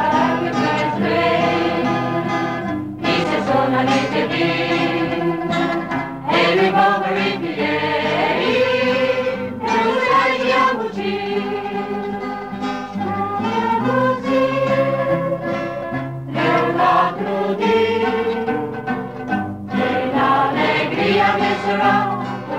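A choir singing a song, with instruments accompanying.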